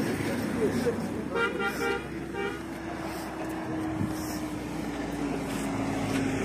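A road vehicle's horn sounds twice in quick succession about a second and a half in, followed by a steady engine drone from traffic on the road.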